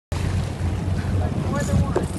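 Boat engine running with a steady low rumble, wind buffeting the microphone, and sea water splashing as a hooked shark thrashes at the surface beside the boat. A voice is faintly heard near the end.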